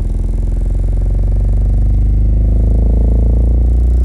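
Nemesis Audio NA-8T subwoofer in free air playing a slowly rising sine sweep, from about 43 Hz to about 63 Hz, getting slightly louder as it climbs. The drive signal is distorted (clipped), so the deep tone carries a stack of buzzy overtones.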